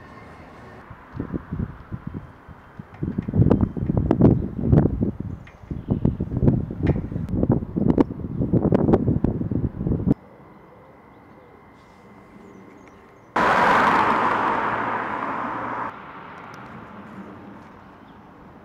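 Wind buffeting the microphone in irregular low gusts, which cut off abruptly about ten seconds in. A few seconds later comes a loud hiss-like burst of noise, about two and a half seconds long, that starts and stops suddenly.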